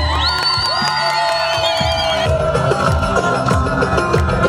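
A wedding band plays Middle Eastern folk dance music: a long-held, wavering lead melody over a drum beat. The tune shifts to a new phrase about halfway through.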